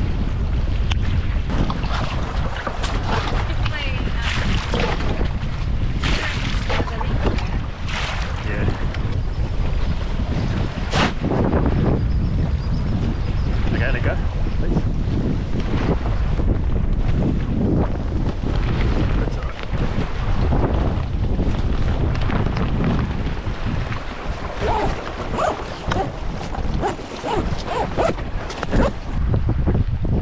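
Wind buffeting the microphone over the rush of a shallow, rippling river, with a few sharp knocks and splashes, the loudest about eleven seconds in.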